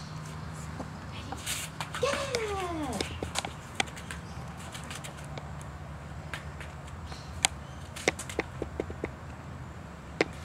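A drawn-out voice falling in pitch about two seconds in, followed by scattered light taps and clicks.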